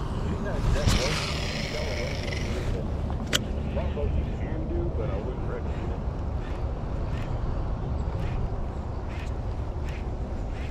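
Baitcasting reel whirring for about two seconds as a big lure is cast and line pays out, a sharp click a little after three seconds in, then the reel being wound in on the retrieve with faint regular ticks.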